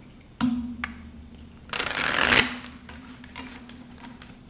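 Tarot cards being handled: two light taps, then a short, dense shuffle of the deck about two seconds in.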